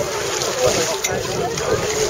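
Background chatter of several voices over a steady rush of wind on the microphone, with water sloshing around swimmers wading out of a lake.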